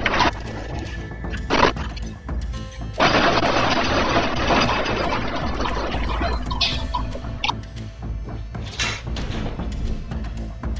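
Background music, with a loud rushing noise that starts suddenly about three seconds in and fades over the next few seconds. Several short, sharp high-pitched sounds come through, a couple near the start and a few in the second half.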